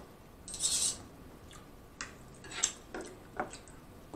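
Metal fork clinking and scraping against food and a glass baking dish while a hamburger steak is cut. There is a short hiss about half a second in, then a handful of sharp clicks in the second half.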